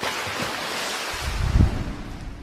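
Sound effect of an animated logo end card: a rushing whoosh with a deep boom that is loudest about one and a half seconds in, then fading away.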